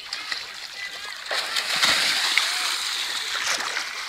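A person jumping into shallow lake water: a splash about a second and a half in, followed by a couple of seconds of churning, splashing water.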